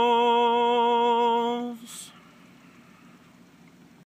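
A man's unaccompanied singing voice holds the final note of the song steady for nearly two seconds. The word ends on a short hiss, and faint room tone follows.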